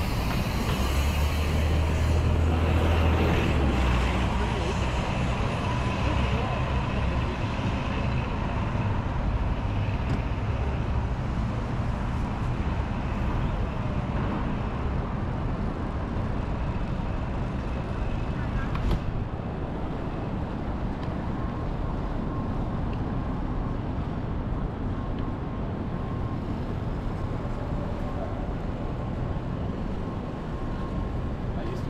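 Busy city street ambience: steady traffic noise and indistinct voices of passersby. A bus engine rumbles deep and loud for the first few seconds, then fades.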